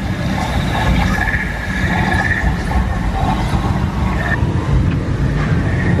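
Small waterfalls pouring into a pond, a steady loud rush of water.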